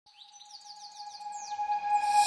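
Rapid falling bird chirps over a single held note, fading in as the opening of a music track.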